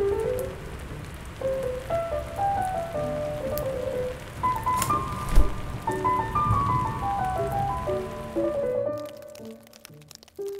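Steady rain falling, heard under soft piano music, with a single low thump about halfway through; the rain stops abruptly near the end, leaving the piano alone.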